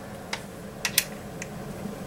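Four light clicks over about a second and a half as the small trigger-group retaining pin is picked up and set against the receiver of a Franchi Affinity 12-gauge shotgun during reassembly.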